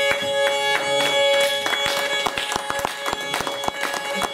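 A kemençe playing a fast tune over steady droning double stops, with listeners clapping along, the claps getting denser about halfway through.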